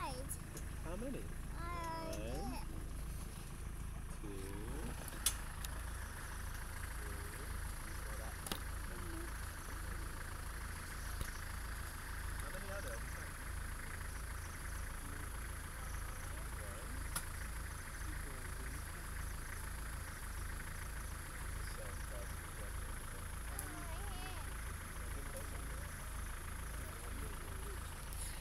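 Vehicle engine idling with a low, steady rumble. A steady higher buzz joins about five seconds in.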